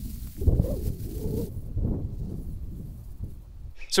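Loose straw mulch being pulled apart and spread by hand over a potato bed: an uneven, low rustling with soft thumps, louder in the first half and dying away near the end.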